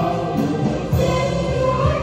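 Church choir singing a Vietnamese Catholic hymn in held, sustained notes.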